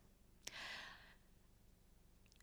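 A short breath, about half a second long, with a small click at its start. The rest is near silence.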